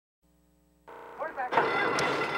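Near silence at first, then a low steady hum as the sound comes in, a brief voice just over a second in, and then a steady wash of outdoor noise.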